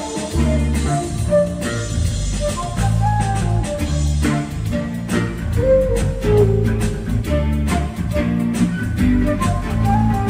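Instrumental band music: guitar and a moving bass line over a steady drum-machine beat.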